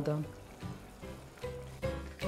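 Background music coming in with low bass notes from about halfway, over a faint sizzle of caramel syrup simmering in the saucepan.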